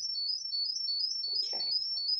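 Audio feedback on a video call: a high, wavering whistle with a faint low hum underneath. It comes from a feedback loop between two participants' microphones and speakers, which the board suspects are in the same spot.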